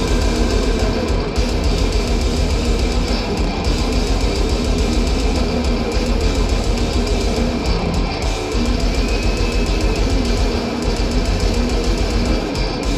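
Death metal band playing live at full volume: heavily distorted electric guitars and bass over fast, dense drumming, heard through the PA from the crowd.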